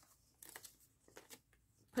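Faint rustling of yarn and a knitted piece being handled and gathered up, a few soft brushing sounds.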